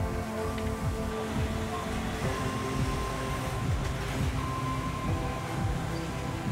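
Background music with held notes over a busy low end.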